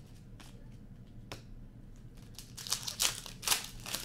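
A few light flicks of trading cards being handled, then a hockey card foil pack being torn open and its wrapper crinkled, in a run of loud rustling bursts through the second half.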